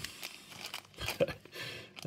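Clear plastic zip bag of small transistors crinkling as it is handled, in short irregular crackles and clicks.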